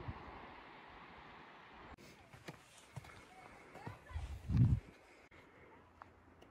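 Faint, indistinct voices of people on a hiking trail with a few scattered footstep clicks, and one louder low thump about four and a half seconds in.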